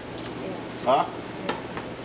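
Steady background hiss of a commercial kitchen, with a short spoken reply about a second in.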